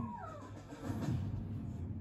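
A Siamese cat's short meow, falling in pitch, right at the start, with television background music underneath.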